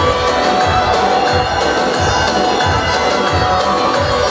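Loud live dance music with a dense sustained melody over a heavy, regular low drum beat, about one and a half beats a second, with a crowd cheering over it.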